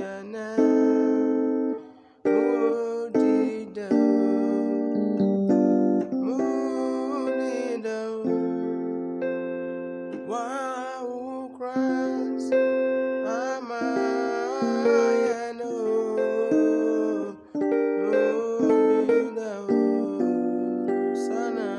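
Electronic keyboard playing the chords and melody of a Christmas song in F major, note by note, with short breaks about two seconds in and near the end.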